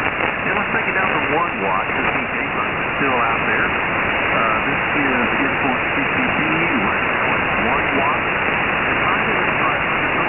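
Lower-sideband shortwave reception on the 40-metre band through a web SDR receiver: steady band-noise hiss, cut off above about 3 kHz by the receiver filter, with a faint single-sideband voice coming and going beneath it.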